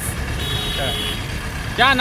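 Street traffic noise from passing vehicles, with one short, steady, high-pitched electronic beep about half a second in.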